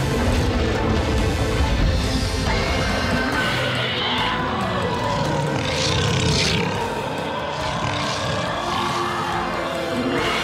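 Tense orchestral cartoon score with growling, screeching dinosaur vocal effects from a snarling raptor-type sharptooth layered over it, the sharpest cries about halfway through.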